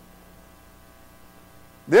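Steady low electrical hum with nothing else over it, until a man's voice begins near the end.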